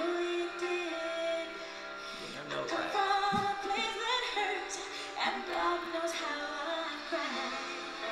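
A woman singing a slow ballad live, accompanied by acoustic guitar.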